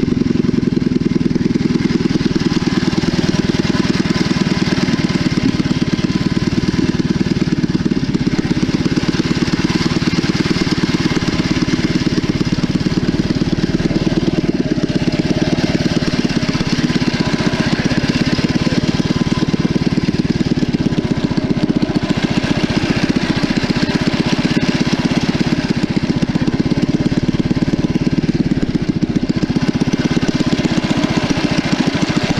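A 212cc single-cylinder four-stroke small engine running steadily under load, driving a kayak's propeller, with the propeller churning and splashing the water close by.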